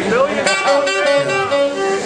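A live band's lead instrument playing a short melodic phrase of held notes, opening with a rising slide.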